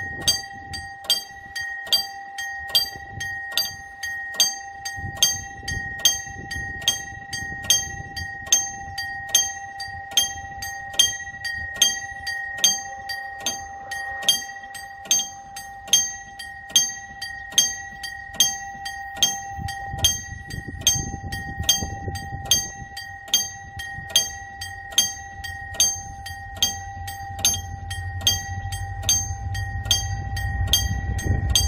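Level-crossing warning bell ringing in a steady, repeating ding, about three strikes every two seconds. In the later part a diesel locomotive's rumble builds, growing louder near the end as the train approaches.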